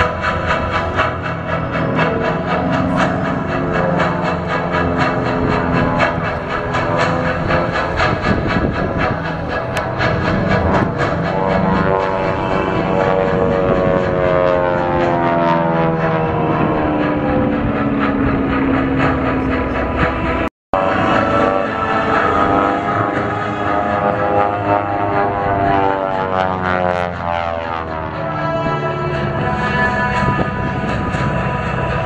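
The twin radial engines of a Beech 18 flying an aerobatic routine. Their drone slides down and up in pitch as the plane passes and turns. The sound breaks off for an instant about two-thirds of the way through.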